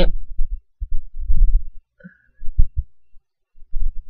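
Handling noise: four irregular, muffled low thumps and bumps. There is no audible spray hiss.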